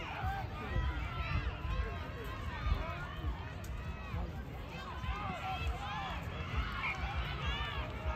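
Many voices calling and shouting at once across a sports field, players and sideline spectators during play, over an irregular low rumble.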